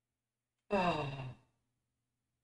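A man's single sigh about a second in: a short voiced breath out, falling in pitch, over a faint steady hum.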